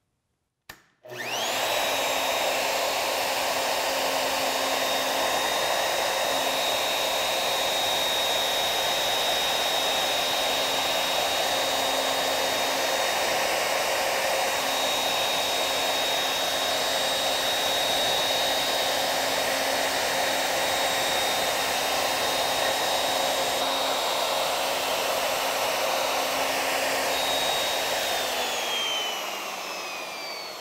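Plunge router switched on about a second in with a click and a quick spin-up. It then runs at a steady high speed with a steady whine while routing a mortise in a jig. Near the end it is switched off and winds down with falling pitch.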